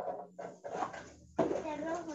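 Indistinct children's voices talking over a low steady hum.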